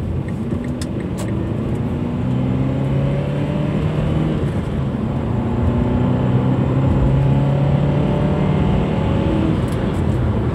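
Car engine accelerating, heard from inside the cabin with road noise, its note rising steadily in pitch and growing louder.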